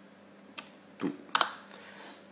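A few computer keyboard keystrokes, about three short clicks in the second half, as a short entry is typed in.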